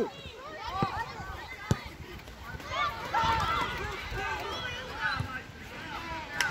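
Young girls' high-pitched voices shouting and calling across a football pitch, several at once around the middle, with a few sharp knocks early on.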